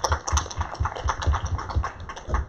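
Small crowd applauding, a patter of irregular hand claps.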